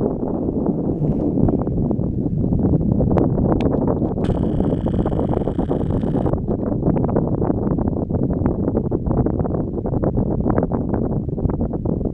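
Wind buffeting the camera microphone on an open chairlift: a loud, steady low rumble. A brief, higher hiss with a faint tone in it comes in about four seconds in and lasts about two seconds.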